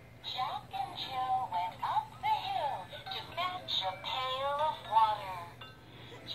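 Musical plush lamb toy singing a song through its small built-in speaker: a thin electronic singing voice carrying a melody.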